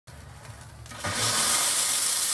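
Steam hissing out of a compound marine steam engine being warmed up. After a quieter first second with a low rumble, a loud, steady hiss starts suddenly about a second in as steam is let out.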